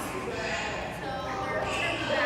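Indistinct chatter of visitors' voices, children's and adults', with no words made out.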